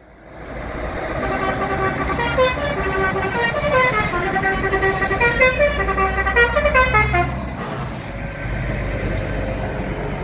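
A truck's musical air horn playing a short tune of several notes, stepping up and down in pitch, for about five seconds. Under it and after it, the low diesel engine rumble of the slow-moving trucks.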